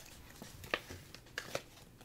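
Trading card in a soft plastic sleeve being handled and slid into a rigid plastic top loader: faint plastic rustling with a few light clicks, the sharpest about three quarters of a second in and two close together near a second and a half.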